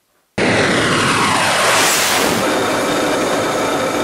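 Jet aircraft flying past. The engine noise comes in suddenly, swells to its loudest about two seconds in with a falling sweep in pitch as it passes, then carries on as a steady jet whine.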